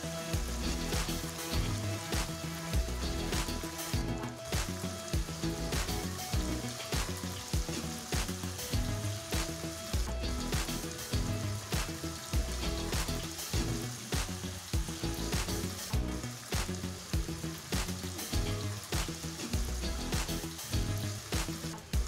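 Paneer cubes sizzling and crackling as they shallow-fry in oil in a nonstick pan, with a wooden spatula now and then turning them. Background music with a steady beat plays underneath.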